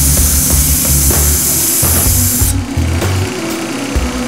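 Wooden knife handle pressed against a running belt grinder's sanding belt, a steady dense hiss of wood being abraded that cuts off suddenly about two and a half seconds in as the handle comes off the belt. Background music with a bass line plays underneath.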